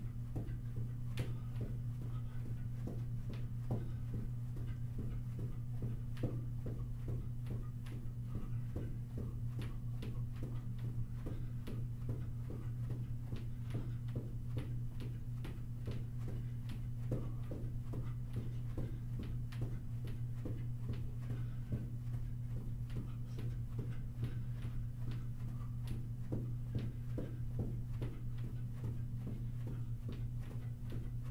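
Sneakers thudding on a carpeted floor in a steady rhythm as a person jogs in place, over a steady low hum.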